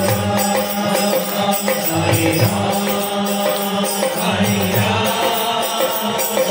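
Devotional group chanting with musical accompaniment, continuous and loud, its low phrases recurring about every two seconds.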